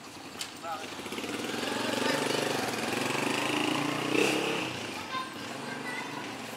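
Motorcycle tricycle engine passing close by: it grows louder from about a second in, is loudest in the middle, and fades again near the end.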